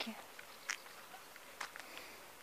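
Footsteps on a gravel lane: two soft crunching steps about a second apart, over faint outdoor hiss.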